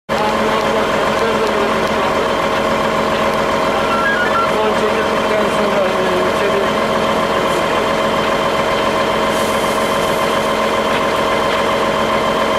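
Fire truck engine running steadily close by, a constant drone with several held steady tones, with faint voices underneath.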